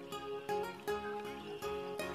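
Quiet background music with plucked-string notes, a new note struck about every half second over held tones.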